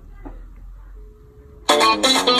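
A phone call ringing through: a faint short beep, then guitar ringtone music starts suddenly and loudly near the end.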